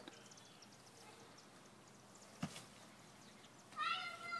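Mostly quiet, with one soft thud of a soccer ball being kicked on grass about halfway through. Just before the end a high, drawn-out call begins.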